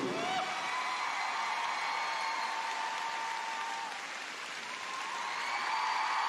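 Large ice-arena audience applauding steadily. The applause dips a little about four seconds in, then swells again.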